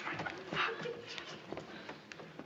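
Short wordless voice sounds, rising and falling in pitch.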